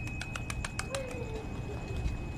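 Feral pigeons taking off in a flock, their wings clapping in a quick run of sharp claps during the first second, followed by a short low falling coo.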